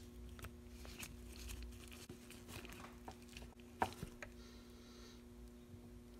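Faint small metallic clicks and scrapes of a hex key turning a small bolt into the cage of a Shimano Deore XT M735 rear derailleur, with one louder click about four seconds in.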